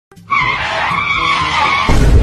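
Tyre screech, a long wavering squeal lasting about a second and a half as the costumed rider pulls up on the scooter. Just before the end a loud deep bass sound cuts in.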